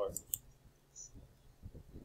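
Two sharp computer mouse clicks about a fifth of a second apart, closing an image preview on screen.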